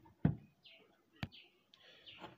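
Plastic gearbox of a homemade hand-crank generator, made from a toy car's DC gear motor, knocking as it is picked up and handled: a dull thump about a quarter second in and a sharp click about a second later.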